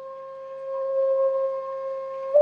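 Tongan nose flute (fangufangu) holding one long, pure note that swells in loudness about a second in.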